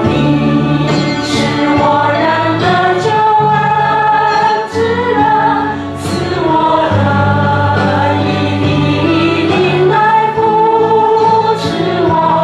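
Christian worship song performed by a church praise band with group singing: a sung melody over sustained bass notes, continuing steadily.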